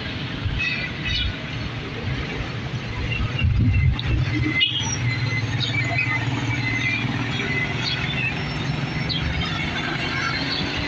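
Street traffic on a busy highway: cars, motorcycles and motorized tricycles passing, making a steady low engine and tyre rumble that swells a little before the halfway point. Short high squeaks come and go over it, with a brief break in the sound about halfway.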